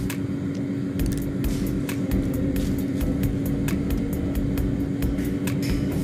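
A steady low hum with a rumble beneath it, and small clicks scattered irregularly through it.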